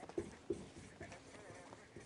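A marker writing on a board: faint, irregular short taps and scratches as the letters are stroked out.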